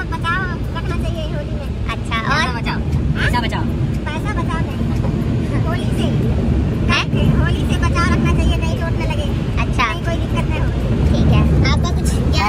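Steady low road and engine rumble inside the cabin of a moving Tata car, with people's voices over it at times.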